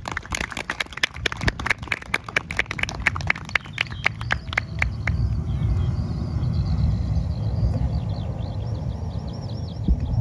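A small audience clapping, a few people's claps that thin out and stop about five seconds in. After that comes a steady low rumble with faint high chirping.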